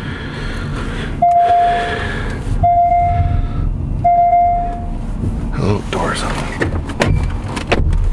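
A car's electronic warning chime beeps three times, each tone held for nearly a second and evenly spaced, over a low rumble as the Panamera S E-Hybrid rolls on electric power.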